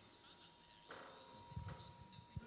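Near silence: room tone of a hall, with a faint click about a second in and a few soft low knocks near the end.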